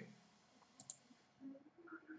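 Near silence, with a faint click about a second in and a couple of fainter ticks near the end.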